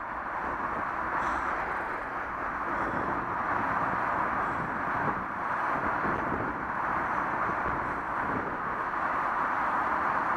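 Bicycle tyres rolling slowly over a loose gravel track, a steady crunching hiss.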